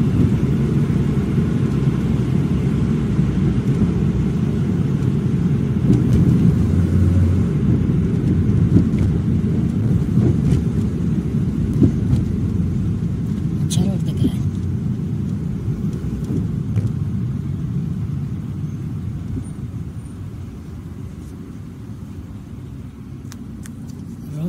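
Cabin noise inside a moving car: a steady low rumble of road and engine noise that quietens over the last several seconds.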